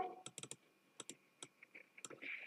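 Soft, irregular clicking of a computer mouse and keyboard, about eight clicks in two seconds.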